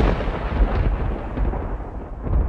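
A deep, rolling, thunder-like rumble from the outro sound effect, heaviest in the bass. It holds steady, easing slightly near the end.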